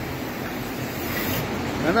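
Steady hum and hiss of a milking parlour's machinery running, with no distinct strokes or rhythm.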